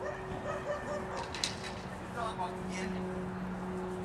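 A dog barking and yipping in short bursts, over a steady low hum.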